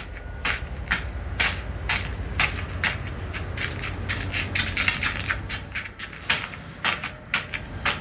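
Footsteps crunching on gravel at a walking pace, about two steps a second and quicker in the middle, over a steady low rumble.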